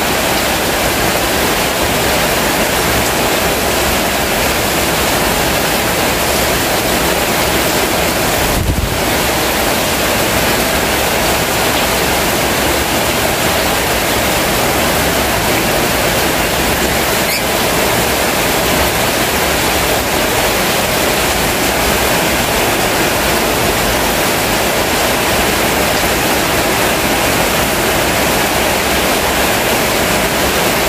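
Heavy tropical downpour: a loud, steady hiss of pouring rain.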